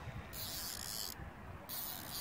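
Spinning fishing reel ratcheting in short bursts as a hooked fish is played on a bent rod. One burst stops about a second in and another starts near the end.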